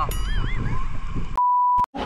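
A short comic whistle sound effect wobbling up and down in pitch, then a steady one-tone bleep of about half a second with all other sound cut out around it, as when a word is bleeped out.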